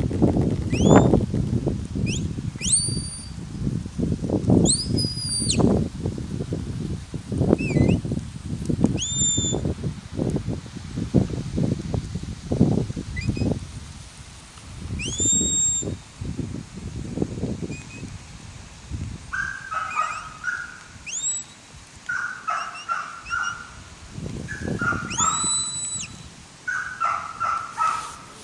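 Shepherd's whistle giving commands to a working sheepdog: a series of short blasts a few seconds apart, each sliding up and then holding its note. Low rumbling noise runs under the first half.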